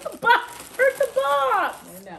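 Women laughing and calling out in high, wordless cries that fall in pitch.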